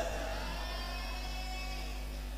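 A pause in a man's talk: a steady low electrical hum, with the faint echo of his last words fading out during the first second or so.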